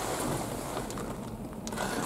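Low, steady background rumble inside a car cabin, with a faint click near the end.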